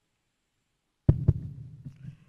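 Handling noise from a handheld microphone: after silence it comes on about a second in with two quick thumps close together, then a low rumble as it is held.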